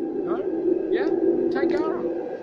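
People talking close by, over the steady rumble of an electric suburban train approaching through the tunnel.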